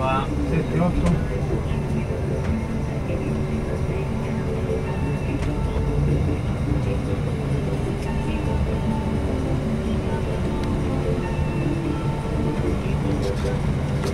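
Inside a moving coach bus: the diesel engine and road noise make a steady low rumble, with indistinct voices in the cabin.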